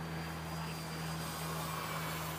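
Durafly T-28 V2 electric RC model plane flying at a distance: the faint, steady drone of its motor and propeller, with a whine that falls slowly in pitch, over a steady low hum.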